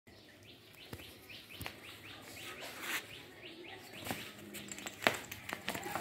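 A small bird chirping over and over, short rising notes about four a second, with a few sharp clicks, the loudest about five seconds in.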